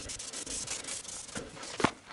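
A cloth rag wiping dirt off a 2001 Honda Civic's front anti-roll bar: cloth rubbing and scraping on the metal bar, with a sharp click near the end.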